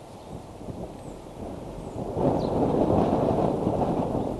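Wind buffeting an outdoor nest-camera microphone, a low rough rumble that gusts much louder about two seconds in.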